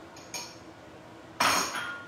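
Lidded cooking pot clinking as it is dragged out: a light knock just after the start, then a sharp clink of cookware on a hard surface about one and a half seconds in, ringing briefly.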